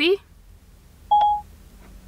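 A single short electronic beep from an iPhone about a second in: Siri's chime after a spoken question, marking that it has stopped listening and is about to answer.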